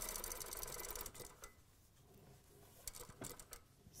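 Industrial lockstitch sewing machine stitching a seam with a fast, even rhythm for about a second and a half. It stops, then runs again briefly about three seconds in as the curve is eased through.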